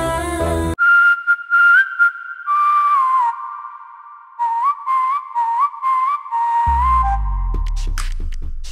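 A whistled melody: one clear tone stepping and sliding between notes, alone after the backing music cuts out a moment in. A bass-heavy music track comes back in near the end.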